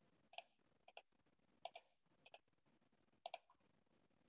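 Faint clicking at a computer: five short double clicks spaced roughly half a second to a second apart, over near silence.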